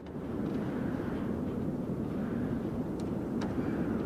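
Steady low outdoor rumble with no distinct source. Two faint short clicks come about three seconds in.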